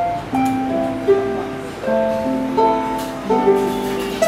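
Harp played by hand: plucked notes that ring on and overlap, a melody over long-held lower notes.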